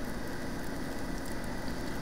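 Steady background hiss of the recording microphone with no distinct events: room tone between stretches of narration.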